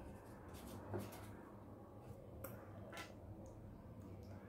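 Faint handling sounds: a few soft, short taps as blue paint is dabbed onto a foam stamp with a small paintbrush, the clearest about a second in.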